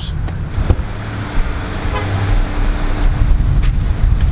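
Steady low outdoor rumble of road traffic, with a single sharp click a little under a second in.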